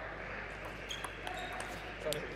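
Table tennis ball being struck by rubber-faced bats and bouncing on the table during a rally: a run of sharp clicks, several a second, in a large hall.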